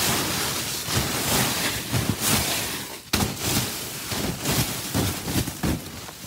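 Snow sliding off mesh netting as it is pushed up from underneath: a rushing hiss with rustles and thumps from the net, breaking off briefly about three seconds in and then going on.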